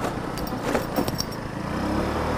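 150cc scooter engine running steadily under way, with road and wind noise and a few light clicks near the middle.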